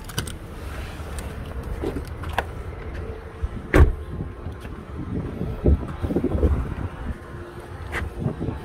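A pickup truck door shut once with a solid slam a little under four seconds in, among low rumbling and handling thumps.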